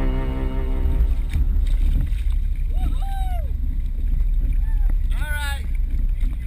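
Low rumble of water and wind buffeting a waterproof action camera at the water's surface, with a few short high-pitched shouts around the middle and near the end. Background music fades out in the first second.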